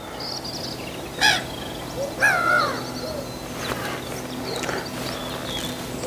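Birds calling: a short call about a second in, then a longer wavering call just after two seconds, over a faint steady low hum.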